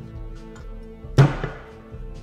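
Background music, and about a second in one loud, sharp knock of metal tools on a Jaguar AJ-V8 engine's cylinder head while a valve spring compressor is worked on it.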